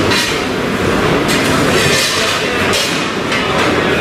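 Train running on the tracks: steady, loud rail noise of wheels on rails.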